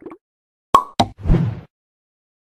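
Sound effects for an animated end card: two sharp pops about a quarter second apart, then a short noisy burst, all within about a second.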